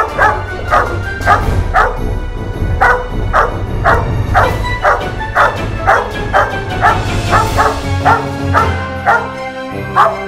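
Young German Shepherd barking repeatedly in a protection drill, about two to three barks a second with a short pause about two seconds in, over background music.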